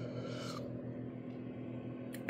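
Small 12-volt fan heater running, a steady low hum of its little fan motor with a faint airy hiss.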